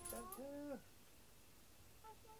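A cat meowing once, a short call in the first second that bends up in pitch, holds, and drops away: the lonely crying of a cat left home alone.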